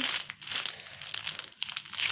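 Plastic packet of dry spaghetti crinkling as it is handled and turned over in the hands: an irregular run of small crackles.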